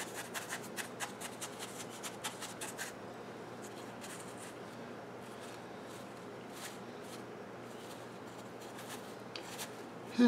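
Fingers pushing leaf cuttings into loose perlite in a plastic clamshell tray: a quick run of small gritty crunching clicks for about the first three seconds, then fainter, scattered rustling.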